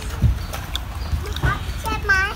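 A man chewing a mouthful of crunchy green mango, with a few sharp clicks and soft knocks from his mouth. A brief vocal sound comes about one and a half seconds in.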